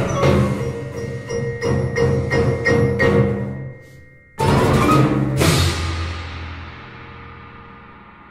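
Final bars of a percussion orchestra piece: marimbas, vibraphones and timpani play loud, repeated accented strokes over a low rumble, then break off briefly about four seconds in. A single loud closing hit with crashing cymbals follows and rings on, slowly fading away.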